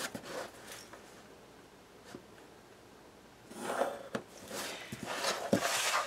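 Pencil scratching briefly along a ruler on cardstock at the start, then after a quiet stretch, cardstock sliding and rustling on a tabletop with a few light taps as the ruler and pencil are set down.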